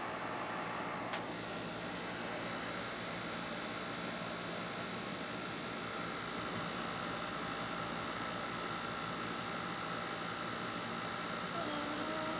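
Steady low hum and hiss of room noise through a phone microphone, with a single sharp click about a second in and a faint short pitched sound near the end.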